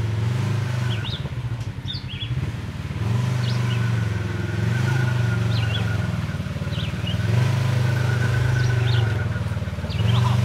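Side-by-side UTV engine working at low speed as the machine crawls up a rocky ledge, its revs stepping up and easing back several times as throttle is fed in and let off.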